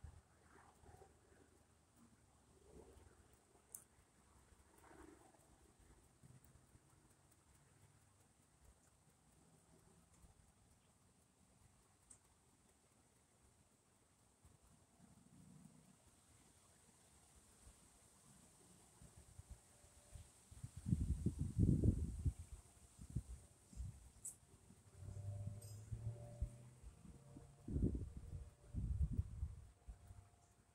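Wind on the microphone: faint for most of the stretch, then two spells of low buffeting gusts, one about 21 seconds in and another lasting through the last few seconds.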